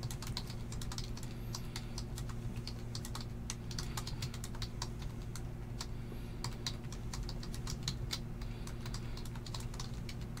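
Rapid, irregular clicking of typing on a computer keyboard, over a steady low hum.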